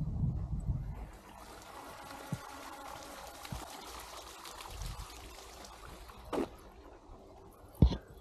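Water trickling steadily for a few seconds in the middle, with a few soft low thumps.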